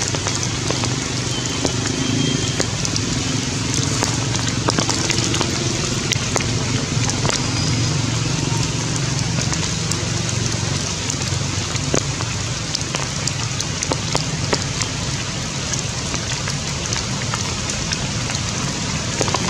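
Steady rain falling on forest leaves, a constant hiss with many small sharp drop hits, over a low background murmur.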